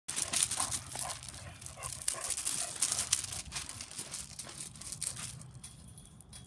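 Excited dog moving about on gravel: a dense, irregular crunching of the stones underfoot, with a few short high whines mixed in, easing off about five seconds in.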